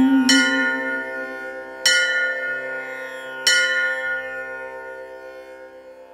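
A bell struck three times, about a second and a half apart, each strike ringing on and slowly dying away, so the sound grows fainter toward the end.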